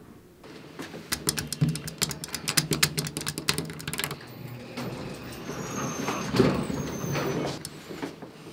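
Elevator car and doors running: a steady low hum with rapid rattling clicks over the first few seconds, then a rushing noise with two brief high squeals.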